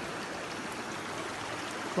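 Small mountain stream running steadily: an even rush of flowing water.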